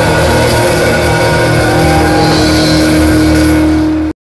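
Live rock band playing hard rock with the drum kit close up: drums and cymbals with electric guitar and bass. A note is held steady over the last two seconds.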